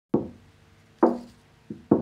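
Opening notes of a song: four single plucked guitar notes with a sharp attack, each ringing briefly and fading, spaced about a second apart, with the last two close together near the end.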